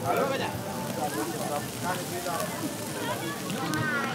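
Several voices talking over the crackle and sizzle of sauce-coated monkfish grilling over a wood fire.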